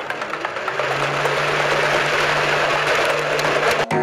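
Electric motors and propellers of a 3D-printed twin-boom RC plane spinning up for a takeoff roll, picked up by a camera mounted on the plane. A steady low hum comes in about a second in under a growing rush of prop wash and wind, and the sound cuts off abruptly near the end.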